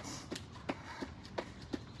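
Sneakers landing on a stone patio during quick, small jumping jacks: a soft, even tap about three times a second.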